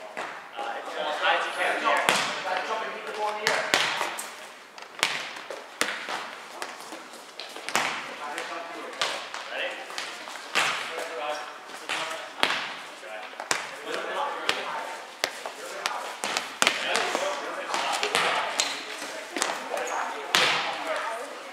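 Volleyballs being hit and bouncing on a gym floor: sharp slaps and thuds every second or two, over steady chatter from players in a large gym.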